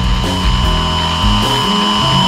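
Television static sound effect: a steady, loud hiss with a thin high-pitched whine in it, over background music with a bass line.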